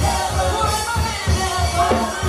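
Gospel praise team singing into microphones over instrumental backing with a steady, even beat in the bass, played loud over a church sound system.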